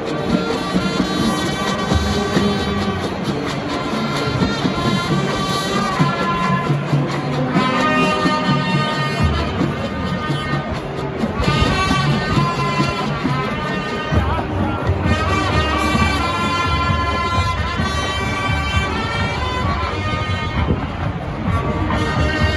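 High school marching band playing a halftime show tune: brass and woodwinds carrying sustained chords and a melody over percussion, with a low bass part that drops out and comes back a few times.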